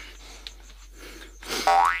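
A cartoon-style 'boing' sound effect: a short springy tone gliding upward in pitch for about half a second, starting about one and a half seconds in. Before it there is only faint room noise.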